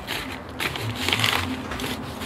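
Rustling and crinkling handling noise from gloved hands working at a plant pot, in irregular scrapes that are loudest around the middle.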